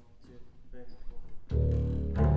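Double bass played with the bow: a loud, low sustained note begins suddenly about a second and a half in, the first note of a slow jazz piece.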